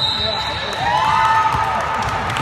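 Basketball being bounced on a gym's hardwood court during a game, with sneakers squeaking and players' and spectators' voices echoing in the hall.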